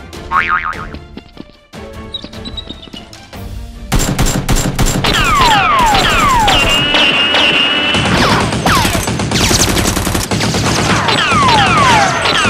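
Action background music with dubbed gunfire sound effects. About four seconds in it turns loud with rapid machine-gun-style bursts and repeated falling whistling tones.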